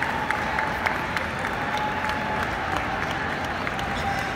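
Ringside spectators clapping in a steady patter of sharp claps, several a second, over the general murmur of a crowd in a large hall. A faint steady whine runs underneath.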